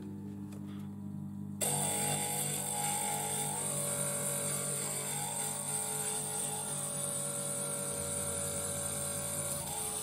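Small Glastar glass grinder switching on about a second and a half in and then running steadily, its bit grinding the edge of a glass blank, over background music.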